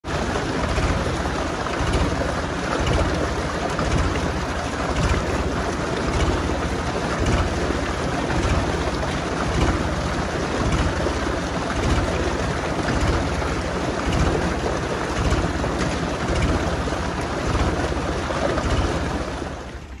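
Ford 3600 tractor's three-cylinder diesel engine running with a low, regular pulse, mixed with a steady rush of water pouring from a tube-well pipe into a concrete tank.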